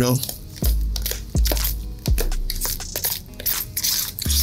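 A spoon stirring and mashing a thick, wet salmon croquette mixture of fish, egg, milk and flour in a plastic bowl: a quick, irregular run of scraping and knocking strokes. Deep bass notes of background music sound under it.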